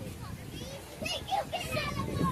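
Children's voices calling out and chattering, several overlapping and too distant to make out words; they thin out briefly, then pick up again about halfway through.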